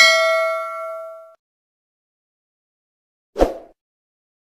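Notification-bell ding sound effect from a subscribe-button animation. A bright, several-toned chime rings out and fades over about a second and a half. A short soft thump comes near the end.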